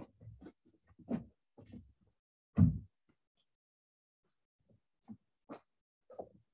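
Clay and tools being handled on a cloth-covered worktable: a few soft knocks and rustles, with one louder, low thud about two and a half seconds in.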